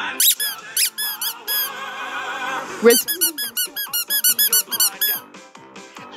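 Rubber duck squeaked in quick runs of short, high notes, standing in for a sung vocal line over an instrumental backing track, with a held stretch between the two runs.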